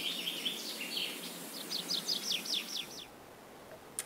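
Songbird singing: a fast trill of short high chirps, then a quicker run of falling notes that stops about three seconds in.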